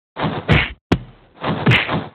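Cartoon kung fu fight sound effects: two heavy punch-like whacks about a second apart, each dropping in pitch, with a sharp crack between them.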